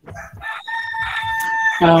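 A rooster crowing: one long, steady held call of about a second, starting half a second in and ending as a man says "um".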